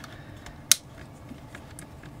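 A single sharp click as a screwdriver tip knocks against the plastic housing of a snowflake projector, with a fainter tick near the end.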